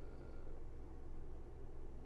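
Faint steady low hum of a caravan air conditioner running on heat.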